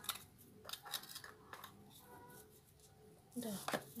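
A small garden trowel tapping and scraping on potting soil in a plastic pot: a handful of short, scratchy clicks as the soil around a plant is pressed down with the back of the trowel.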